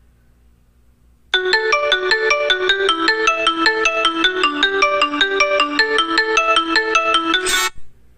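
Smartphone ringing loudly with a marimba-style ringtone melody, set off by the Xiaomi Smart Band 7's Find phone function. It starts about a second in and cuts off abruptly near the end.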